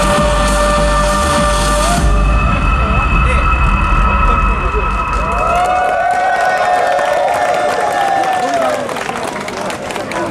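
A live pop song played over a PA system comes to its end: the full band with heavy bass, then a held final chord that dies away about halfway through. After it come whoops and cheering voices.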